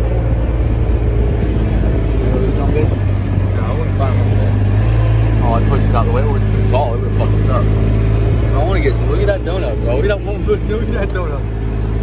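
Kubota RTV 900 utility vehicle's three-cylinder diesel engine running steadily under load as it drives over grass, the note picking up a little about five seconds in.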